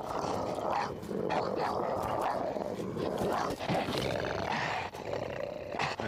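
Unas, the reptilian creatures of the TV show, growling and roaring: a run of creature calls with short breaks between them.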